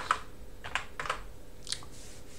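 Computer keyboard keys struck a handful of times, about four separate clicks, as a short terminal command is typed and entered.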